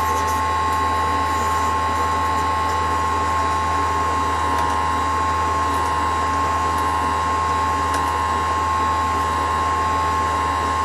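Power hone running steadily, a low hum with a steady whine, while a square steel graver held in its 45-degree swinging arm is honed on the spinning 1200-grit diamond disc to finish the graver's main face.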